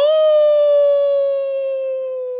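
A man's long, loud held cheer: one high sustained note that sags slightly in pitch, shouted in celebration of a goal.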